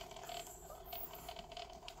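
Faint clicking and creaking from the jointed limbs of a ZD Toys War Machine Mark 1 action figure as it is handled and posed.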